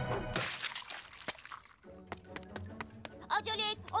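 Cartoon background music cuts off just after the start and gives way to a short swish. A few faint clicks follow over a low hum, and a voice breaks in near the end.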